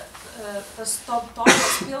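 One loud cough about one and a half seconds in, following a few words of speech.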